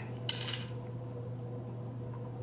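A brief papery crinkle, about a quarter second in, as planner stickers and pages are handled by hand, over a steady low hum.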